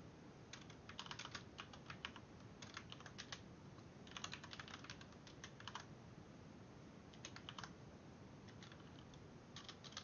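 Faint computer keyboard typing in short runs of rapid keystrokes, separated by brief pauses.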